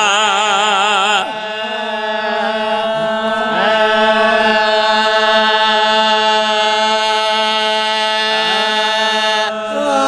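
Men chanting a devotional recitation without instruments. For the first second a single voice sings with a wide, wavering ornament, then the voices hold one long steady note that dips briefly near the end.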